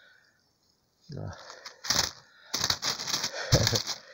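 A thin plastic bag crinkling and rustling as it is handled, in crackly bursts from about halfway through, with a short low thump near the end.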